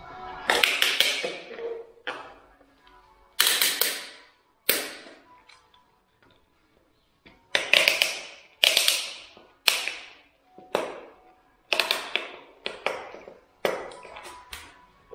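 Tile-leveling pliers tightening plastic wedges into the leveling clips between floor tiles: a string of sharp snaps about one a second, with a pause of a couple of seconds midway. Faint background music underneath.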